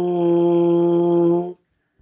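Lips buzzing into a bare trombone mouthpiece: a steady, loud, buzzy tone on one pitch, about the F below middle C, stopping about one and a half seconds in.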